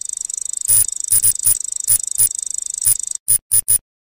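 Synthetic electronic sound effects for an on-screen loading animation: a steady high-pitched digital whir with fast ticking, cut through by short sharp blips every fraction of a second. The whir stops a little after three seconds in, followed by three quick separate blips.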